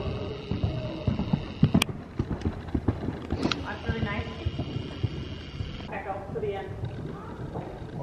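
Hoofbeats of a large horse moving over soft dirt arena footing: a run of dull, uneven thuds, with a couple of sharper clicks about two and three and a half seconds in.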